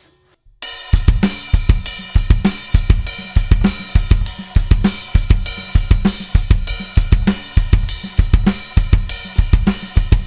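Drum kit playing a funk groove: a repeating cymbal-and-snare ostinato with the bass drum set against it in groups of two strokes. The playing starts about a second in and runs on steadily.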